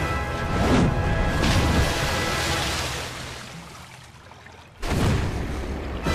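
Animated fight soundtrack: dramatic music with booming impact effects, a heavy hit about a second in. The sound dies down over the next few seconds, then a sudden loud crash comes in near the end.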